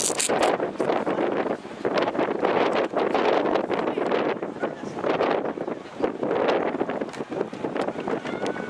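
Crowd of spectators cheering and shouting together, a dense wash of many voices, with wind buffeting the microphone.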